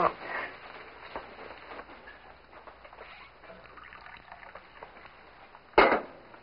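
Faint small clinks and the trickle of coffee being poured, then a single loud knock near the end.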